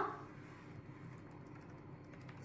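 Faint, quick light ticks of a budgerigar's long claws tapping on a hard tabletop as it walks and scurries.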